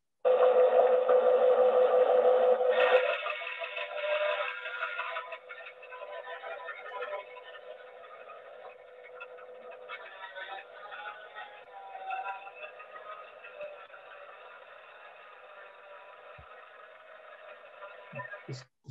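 Steam-engine-driven circular saw cutting a tree trunk, heard as thin, band-limited audio from a played-back video. A steady whine runs throughout; it is loud for about the first three seconds and quieter after that.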